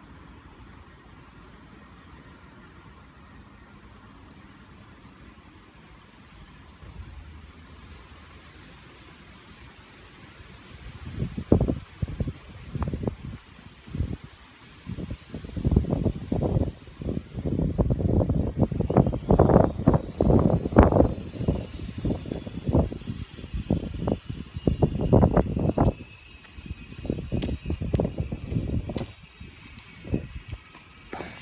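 Wind gusting on the microphone, starting about ten seconds in as irregular low rumbling bursts that come and go for the rest of the time, loudest in the middle. A faint high whine falls slowly in pitch through the second half.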